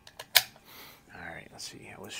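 A sharp metallic click from the action of an Anschutz 64 MP bolt-action rimfire rifle being handled, preceded by a couple of lighter clicks.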